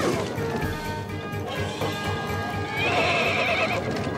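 Cartoon sound effect of a horse whinnying with a wavering cry near the end, with hoofbeats, over background music.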